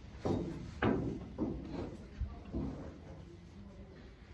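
A few short, dull knocks as a snooker cue and rest are handled and the rest is laid on the table; the loudest knock comes about a second in.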